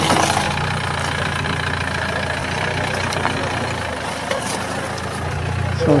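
Volkswagen Sharan minivan's engine idling steadily with a low drone. A man's greeting is heard near the end.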